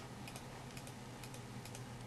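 Faint, irregular clicking of computer keys, about a dozen light clicks over two seconds, over a low steady hum.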